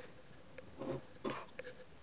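A few faint, brief handling noises, soft taps and rustles, four of them in quick succession, as small tools and a strip of tape are picked up.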